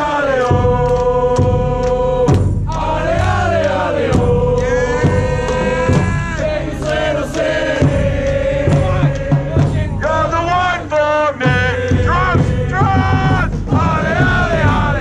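A soccer supporters' group sings a chant together in repeated melodic phrases, with a steady low beat underneath, led by a capo with a megaphone.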